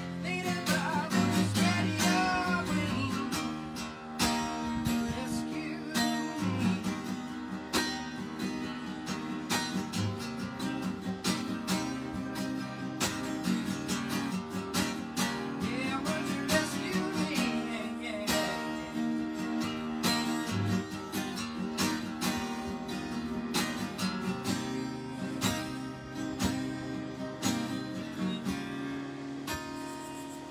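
Takamine acoustic-electric guitar played solo, with strummed chords and picked single-note lines.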